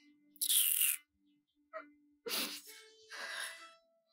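A woman crying, three breathy sobs and a short sniff with no words, over soft sustained background music.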